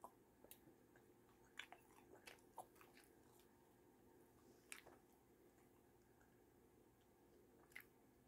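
Near silence with faint, scattered clicks and smacks of a person chewing food with the mouth closed.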